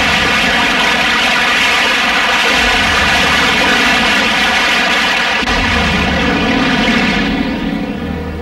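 Heavy rain pouring down, a loud steady rush that fades away near the end.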